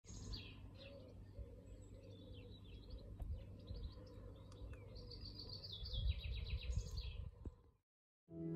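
Small birds chirping and singing, with short calls and a fast repeated trill over a low rumble. It fades out near the end.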